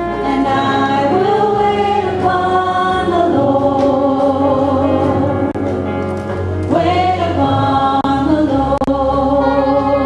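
Group singing of a slow, sustained hymn melody, with voices holding long notes over instrumental accompaniment.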